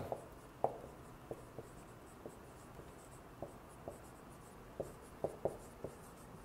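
Dry-erase marker writing on a whiteboard: faint, irregular short strokes and taps of the felt tip as letters are written.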